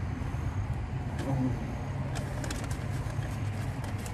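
Steady low hum of a car idling, heard from inside the cabin, with a few short clicks and rustles of food packaging being handled about two seconds in.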